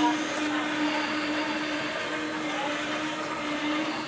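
Autonomous TUG hospital delivery robot rolling along a corridor, its electric drive giving a steady whirring hum.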